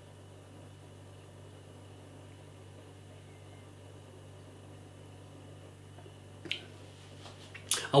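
Quiet room tone with a steady low hum while beer is sipped, broken by one short click about six and a half seconds in, and a smack of the lips just before speech resumes at the end.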